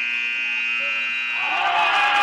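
Gym scoreboard buzzer sounding one long, loud, steady tone as the game clock hits zero, marking the end of the quarter. About halfway through, crowd noise rises under it.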